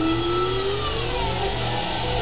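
Jet airliner engines on the takeoff run, their whine gliding in pitch, with one tone falling in the second half.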